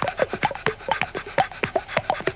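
Quick, irregular run of short breathy gasps, like panting, about six or seven a second, as part of the song's track.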